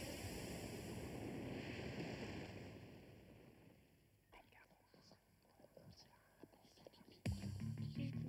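Television static hiss that fades away over the first few seconds, leaving faint scattered clicks. Near the end, music with a steady low bass starts suddenly.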